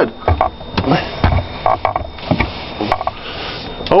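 Steam cleaner hissing as its jet blasts dried spill in the bottom of a refrigerator, with several low knocks and bumps of handling.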